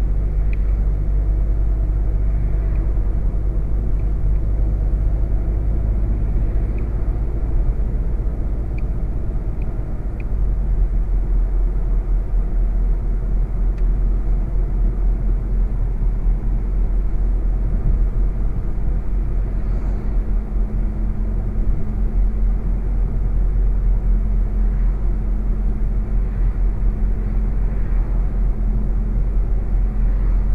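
Cabin sound of a 2016 VW Golf GTI Performance cruising steadily: a low, even drone from its 2.0-litre turbocharged four-cylinder mixed with tyre and road noise.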